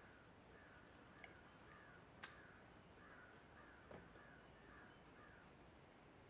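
Near silence with faint, distant bird calls: a run of short, repeated calls about two a second that stops near the end. Three faint clicks fall among them.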